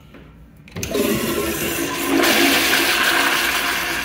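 Commercial toilet with a chrome flushometer valve flushing: a sudden rush of water starts about a second in, gets louder around two seconds in, and begins to fade near the end.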